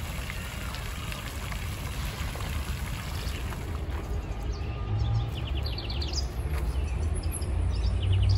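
Water splashing and pouring in a park fountain over a steady low rumble, then birds chirping in quick runs of short, high calls in the second half.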